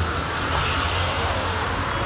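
Road traffic on a city street: a steady rumble and hiss of passing vehicles.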